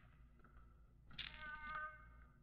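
Near silence, then about a second in a faint held tone at several steady pitches, lasting under a second.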